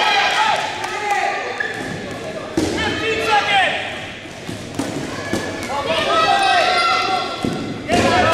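Dodgeballs thudding and bouncing off the gym floor and players in a fast exchange, with several sharp impacts. Over them, players call and shout high and loud.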